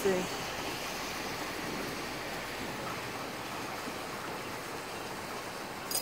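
Steady outdoor rushing noise with no distinct events, and a short click near the end.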